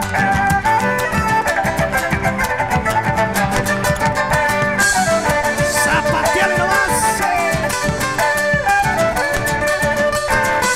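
Live Argentine folk band playing a gato: strummed acoustic guitar and a drum kit keep a quick, steady beat under a melody line.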